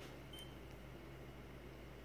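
Quiet room tone with a steady low hum, broken about a third of a second in by a single short, high beep from a handheld SystemSURE Plus ATP meter as its button is pressed to start a reading.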